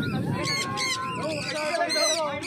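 A flock of free-flying conures calling: repeated short, high-pitched calls, one cluster about half a second in and another near the end, with people talking underneath.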